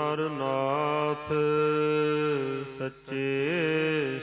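Gurbani chanted by a single voice in long, drawn-out melodic phrases over a steady low drone. The voice holds and bends each note and breaks off briefly about a second in and again near three seconds.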